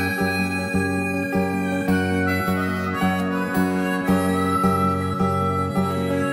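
Harmonica playing a melody with long held notes over steadily strummed acoustic guitar.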